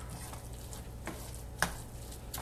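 Wooden spoon stirring cauliflower rice in a skillet: faint scrapes and light clicks, with one sharper knock against the pan about one and a half seconds in.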